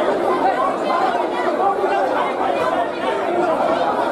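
Chatter of a dense crowd in a large indoor hall: many voices talking over one another in a steady mass, with no single voice standing out.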